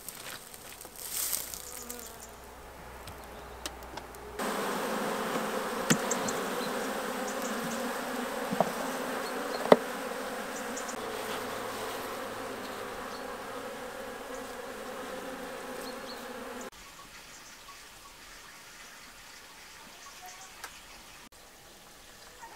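Honeybees buzzing in a dense steady hum around an opened hive as a comb frame is lifted out. The hum starts suddenly a few seconds in and drops away about three quarters through, with a few sharp clicks in it.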